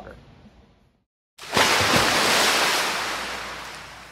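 A loud rushing whoosh sound effect for the logo outro, starting suddenly about a second and a half in and slowly fading away, with a brief low falling thud soon after it starts.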